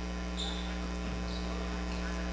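Steady electrical mains hum in the broadcast audio, a low buzz with even overtones, with a couple of faint short high squeaks about half a second and just over a second in.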